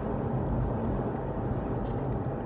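Steady road and engine noise heard from inside the cabin of a moving Volkswagen car.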